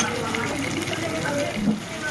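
A slotted metal spatula stirs fried potatoes and fish through a thick, spiced gravy in a metal pan, which bubbles and sizzles steadily as it cooks down. A faint voice is heard in the background.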